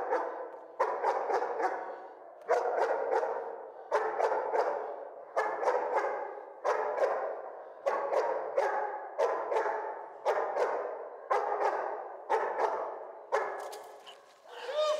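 A protection-trained German shepherd-type dog barks repeatedly at a man approaching its handler, the barks coming about every half second to second, often in quick pairs. Each bark rings on in a large hall.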